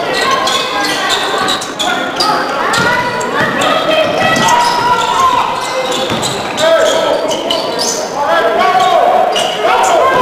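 A basketball being dribbled on a hardwood gym floor, with sneakers squeaking in short chirps, echoing in a large gym.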